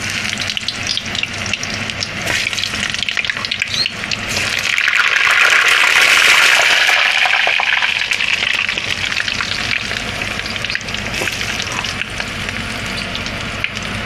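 Frozen croquettes deep-frying in very hot oil in a small saucepan: a steady crackling sizzle and bubbling that swells louder about five seconds in and eases back after about eight seconds. The frozen croquettes make the oil bubble hard and cool it down.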